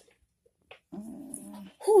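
A person's drawn-out low groan of pain starting about a second in, followed by a louder 'oh', as a needle is worked into the arm to find a vein for a blood draw.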